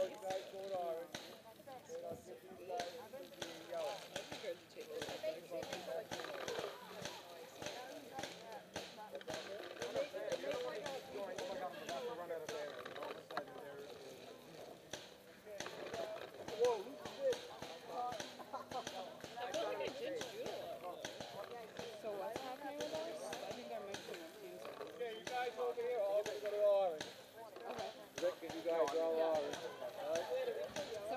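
Indistinct, muffled voices of several people talking, with many short clicks and knocks mixed in.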